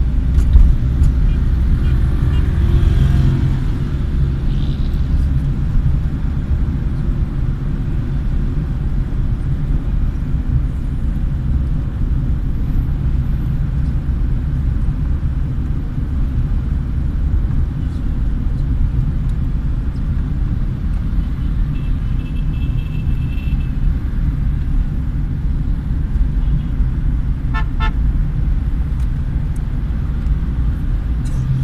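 Car cabin road noise: a steady low rumble of the engine and tyres while driving in traffic. Other traffic sounds short horn toots, once about three quarters of the way through and in a few quick beeps a little later.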